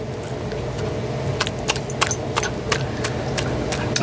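A dog chewing and smacking its mouth on a sticky piece of bread, heard as a string of irregular sharp clicks, over a steady low background hum.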